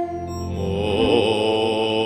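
Tibetan Buddhist chanting: low male voices intoning a mantra in a steady, deep drone.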